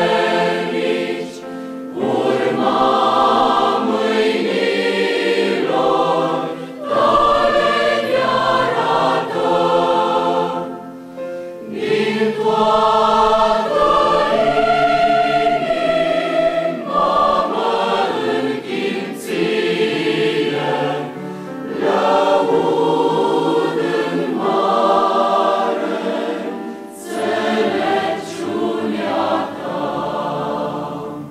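A large mixed choir of women and men singing a hymn in long sustained phrases, with brief breaks between phrases.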